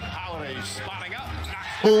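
Talking voices with music underneath, then a man shouts a drawn-out "Boom" near the end.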